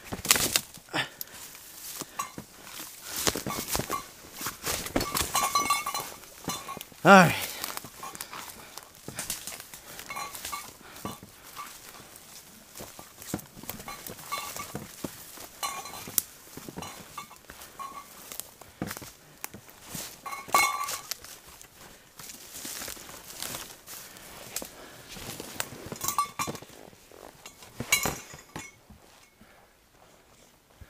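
Footsteps and rustling as hikers push through dense ferns and brush under heavy packs, in an irregular run of crunches and swishes. About seven seconds in comes a short vocal grunt that falls steeply in pitch.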